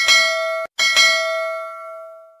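Bell-chime sound effect of a subscribe-button animation, struck twice: the first ring is cut short, and the second is struck again and left ringing and fading.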